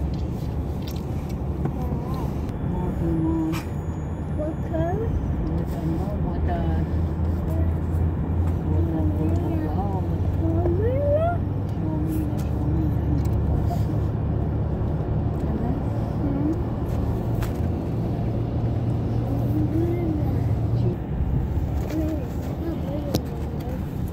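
Steady low road and engine rumble heard from inside a moving car, with voices talking indistinctly over it.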